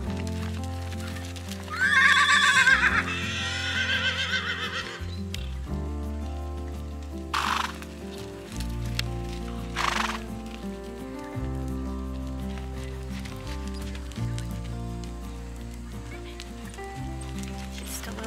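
A horse whinnies once about two seconds in, a wavering call lasting about three seconds, over background music. This is a horse calling out to the other horses. Two brief noisy sounds follow, about seven and ten seconds in.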